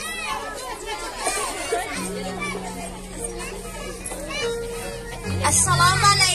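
Many children's voices chattering and calling out outdoors, over a low, steady music tone. About five seconds in the sound grows louder as a PA speaker comes in.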